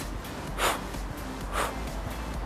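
A woman breathing out sharply twice, about a second apart: forced exhales, one with each punch forward in a workout drill.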